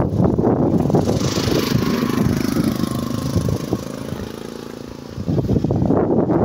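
A motor vehicle's engine running close by as it passes, a steady hum that fades away over the next few seconds. Wind buffets the microphone at the start and again near the end.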